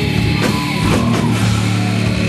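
Thrash metal band playing live: distorted electric guitars over bass and drum kit, with a few sharp drum and cymbal hits.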